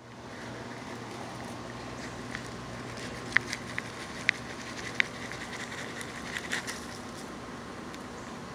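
Steady outdoor background noise with a low hum, broken by a handful of sharp clicks and crackles from about three to seven seconds in.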